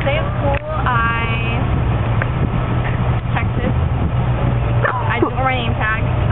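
Car interior with the engine running: a steady low rumble, with a short burst of voice about a second in and talk starting again near the end.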